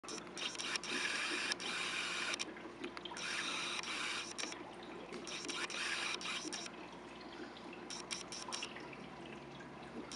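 Aquarium water splashing and bubbling, in three bursts of hiss each a second or more long, then quieter with a few sharp clicks near the end, over a steady low hum.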